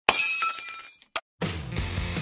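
A glass-shattering sound effect, a sudden crash whose ringing fades over about a second, then a short second hit and a brief gap before music with a steady beat starts.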